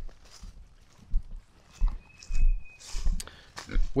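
Footsteps crunching through dry leaf litter and twigs, in irregular steps, with a brief thin high whistle about two seconds in.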